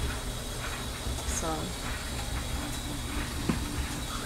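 A steady low hum runs under a single short spoken word, with one short knock about three and a half seconds in.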